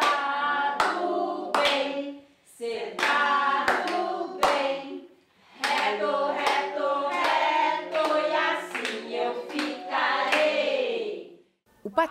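A group of children and adults singing an exercise song together, with sharp hand claps on the beat. It is a sung command of conductive-education physiotherapy, and it comes in three phrases with short breaks between them.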